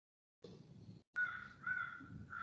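A bird calling in a few short, repeated calls about half a second apart, starting just after a second in. It comes faintly through a video-call microphone whose sound cuts out to silence at the start and again briefly before the calls.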